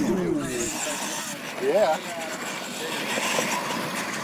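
Short wordless vocal exclamations from people at the track, with a loud rising-then-falling shout just under two seconds in, over steady outdoor background noise.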